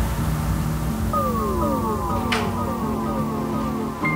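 Background electronic music: a low sustained bass with a run of falling synth glides that start about a second in and repeat one after another, and a brief swish near the middle.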